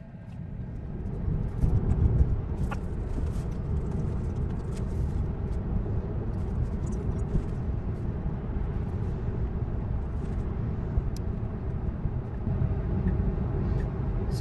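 Road and tyre noise heard inside the cabin of a Tesla electric car. It swells over the first couple of seconds as the car pulls away from a stop, then holds steady as it cruises at about 45 mph.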